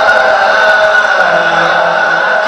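A male naat reciter singing unaccompanied into a microphone, holding long drawn-out notes, with a lower held note coming in about a second in.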